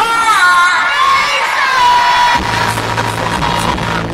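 Live hip-hop concert music over a venue sound system, heard from the crowd. A high, voice-like line glides and then holds one long note, and a low steady bass tone comes in about halfway through.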